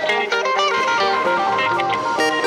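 Background music: a plucked-guitar melody with steadily changing notes.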